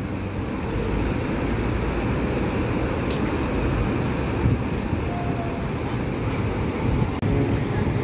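Sumber Selamat intercity bus's diesel engine running as the bus pulls slowly across the terminal apron toward the departure shelter: a steady, low engine and traffic noise. A single sharp click comes about three seconds in.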